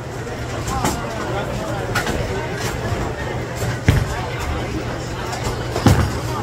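Bowling alley ambience: a steady low rumble, background voices, and two sharp knocks about two seconds apart, the second near the end.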